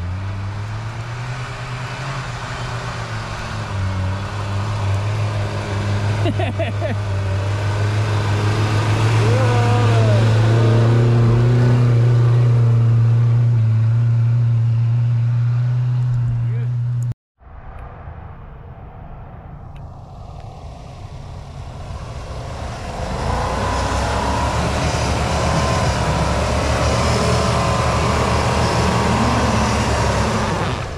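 Off-road 4x4 engine working under load through mud, its steady note building louder over the first half. After a sudden cut, a Jeep Grand Cherokee's engine picks up again and revs as it pushes through the ruts.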